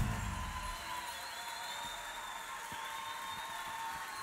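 A live band ends a song with one sharp final hit right at the start, which rings away. A quiet stretch with faint held high tones follows.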